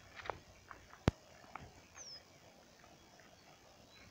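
A single sharp click about a second in, then a faint, short, high bird call note falling in pitch about two seconds in, with a few faint ticks over quiet open-air background.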